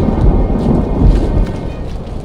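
A loud, deep rumble with no clear pitch, swelling near the start and again about a second in, then easing off.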